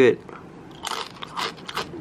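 A crunchy, rolled chili-lime corn tortilla chip (Mini Takis Fuego) being bitten and chewed: a quick run of sharp crunches in the second half.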